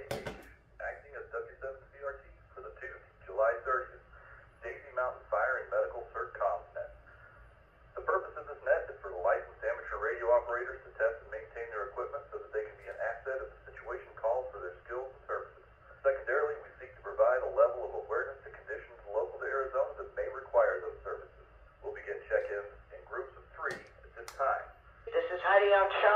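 A net control operator's voice received over the AnyTone 578 two-way radio: thin, narrowband speech from the radio's speaker, coming in phrases with short pauses. Two brief clicks come near the end.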